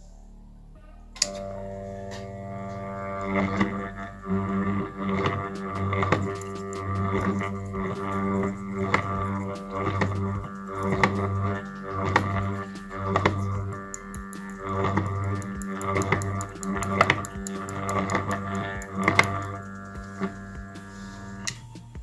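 An armature growler switched on about a second in, giving a steady electrical hum with many overtones. It swells and fades about once a second as an angle-grinder armature is turned on it, with light ticks throughout. This is a growler test for shorted or damaged armature coils.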